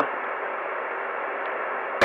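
Radio receiver static: a steady, even hiss of band noise with no station or voice coming through.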